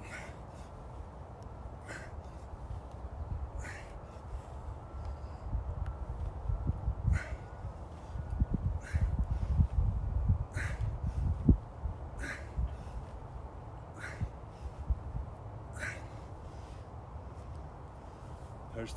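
Short, sharp exhalations or grunts from a man swinging a dumbbell, one with each swing, about every 1.7 to 2 seconds, nine in all. A low rumble runs underneath, swelling in the middle.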